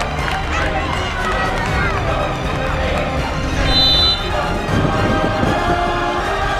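Players and supporters shouting in celebration over background music, with a brief high whistle about four seconds in.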